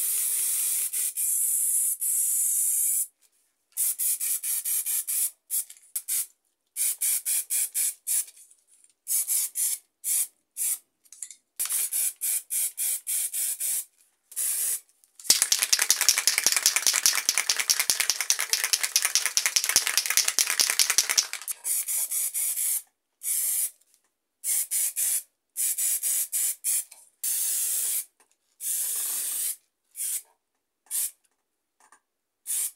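Aerosol spray paint cans hissing in many short bursts of a second or two, each cutting off suddenly into silence. In the middle comes one longer, louder and rougher spell of about six seconds.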